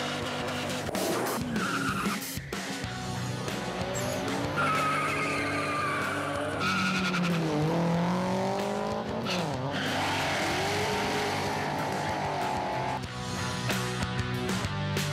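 Drag-racing cars revving hard with tyre squeal, engine pitch climbing and falling several times, under background music.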